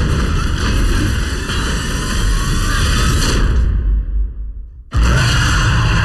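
Film trailer soundtrack: dense music and sound effects that thin out and dip sharply, then come back all at once with a sudden loud hit about five seconds in.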